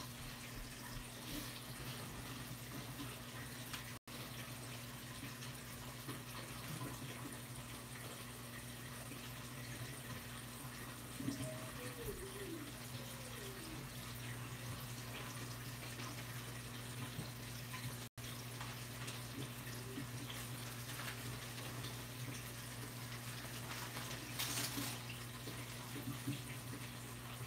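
Steady trickle and wash of circulating saltwater aquarium water, over a low, steady hum.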